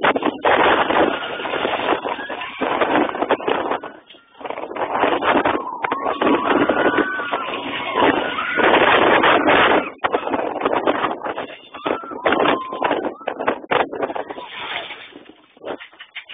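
Wind rushing over a handheld phone's microphone and the rumble of a B&M floorless roller coaster train (Superman: Krypton Coaster) running through its loops at speed. Riders' shouts rise over the rush a few times, and the noise drops briefly about four seconds in.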